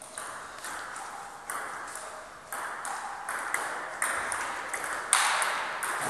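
Table tennis rally: the ball clicking off bats and the table about twice a second, each hit echoing in a large hall.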